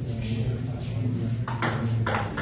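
Table tennis ball being served and struck by rubber paddles, bouncing on the table: a few quick sharp clicks about one and a half seconds in, over a low murmur of voices.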